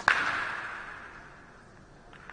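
A sharp double knock right at the start, followed by a noisy ring that fades away over about a second.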